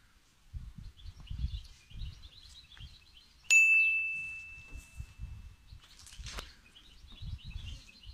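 A single bright bell ding about three and a half seconds in, ringing out and fading over about two seconds: the notification-bell sound effect of a subscribe animation. Faint bird chirping and low rumbling on the microphone run underneath.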